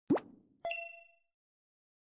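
Sound effects of an animated follow/subscribe end screen: a quick rising pop, then about half a second later a click and a short bright chime that rings for about half a second.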